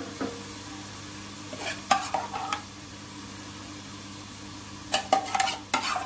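Steel spatula scraping and knocking against a steel pot and a ceramic bowl as thick cooked dal is scooped and poured out, in short clattering bursts about two seconds in and again near the end, over a faint steady hum.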